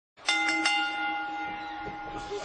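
A bell struck three times in quick succession, then ringing on and slowly fading.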